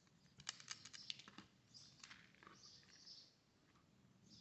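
Faint handling sounds: a quick run of small clicks about half a second in, then soft rustling, as hands work polypropylene cord and plastic beads through a macramé knot.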